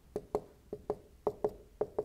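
Dry-erase marker drawing short, quick strokes on a whiteboard, in pairs about half a second apart: the two lines of each equals sign written down a column.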